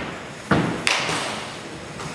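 Baseball batting practice: two sharp cracks about half a second and just under a second in, typical of a bat striking a ball, each ringing briefly in the large indoor hall.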